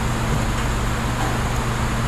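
A steady low mechanical hum with an even wash of noise over it, holding constant throughout.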